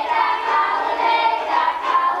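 A children's choir singing, the voices held on sustained sung notes.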